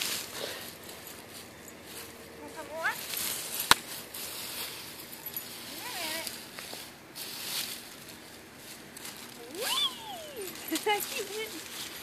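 Dry fallen leaves rustling and crunching in short, irregular spells as a small Yorkshire terrier puppy scampers through them and a person scoops up a handful, with one sharp click a few seconds in.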